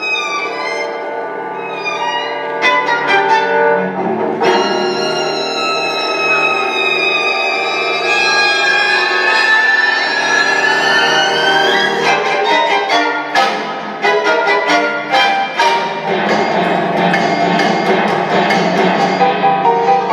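Re-recorded orchestral horror film score for strings playing through a hall's speakers with no sound effects. It opens with sharp stabbing string strikes, has a stretch of sliding string glissandi in the middle, and ends with quick repeated accented strikes.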